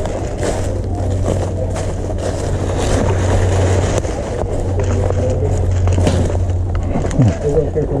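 Footsteps crunching and brush rustling as someone moves through dry leaf litter and undergrowth, a dense run of crackles and scrapes. Under it runs a steady low hum that stops about seven seconds in.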